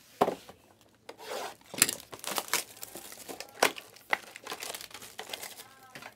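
Foil trading-card packaging being handled and torn open by hand: irregular crinkling and crackling with short tearing sounds.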